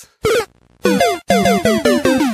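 Short electronic video-game-style outro jingle: one brief note, a short pause, then a quick run of short notes, each with a fast falling sweep.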